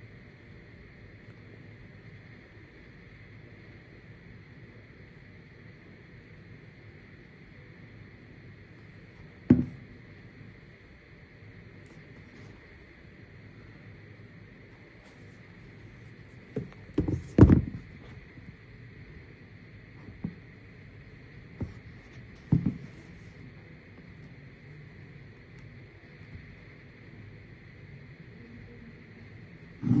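Handling noise as a sneaker is held and turned over in the hand: a few short knocks and bumps, one about a third of the way in, a quick cluster a little past halfway, then a few more, over a steady faint hiss.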